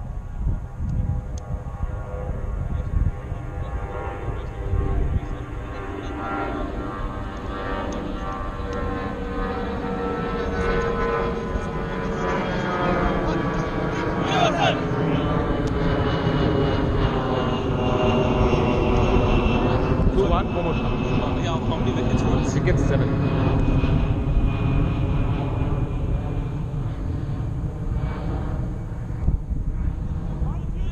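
An aircraft passing overhead: a steady engine drone that grows louder toward the middle and slowly falls in pitch as it goes by.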